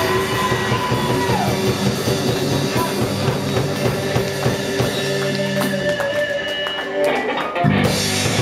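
Live blues band playing: electric guitar bending notes through a Fender amp over electric bass and drum kit. Near the end the bass drops away under drum and cymbal hits, then the full band comes back in loud.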